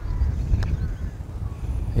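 Uneven low rumble of wind on the microphone, with a faint click about half a second in as a putter strikes a golf ball.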